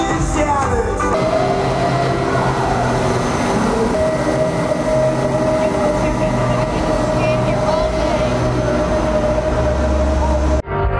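Steady rushing air from large misting fans, under background music with long held notes and a slowly stepping bass line.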